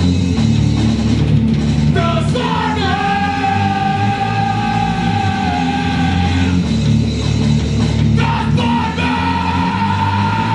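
A rock band playing loud: electric guitar, bass guitar and an electronic drum kit together. Long held high notes slide into pitch about two seconds in and sustain, then come back about eight seconds in.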